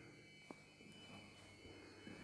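Near silence: room tone with a faint steady high-pitched whine and a single faint tick about half a second in.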